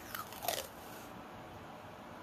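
Masking tape being pulled off the roll: a brief crackly peeling sound in the first second.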